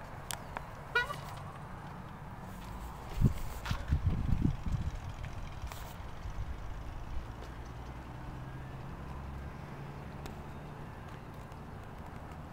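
Footsteps and handling bumps over a low steady hum outdoors, loudest as a run of low thumps a few seconds in, with a few light clicks and a short chirp about a second in.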